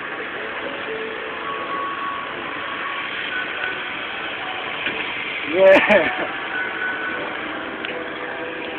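Steady engine hum, with a short, loud voice cutting in a little before six seconds.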